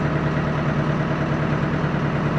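Small boat's engine idling steadily, an even low hum that holds one pitch.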